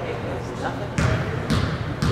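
A basketball bounced twice on a hardwood gym floor, about half a second apart, as the free-throw shooter dribbles before the shot, with murmuring voices echoing in the gym.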